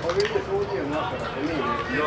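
Indistinct voices talking and calling out across an open football pitch, with no clear words.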